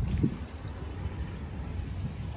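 Uneven low outdoor rumble with a faint hiss above it, easing down about half a second in.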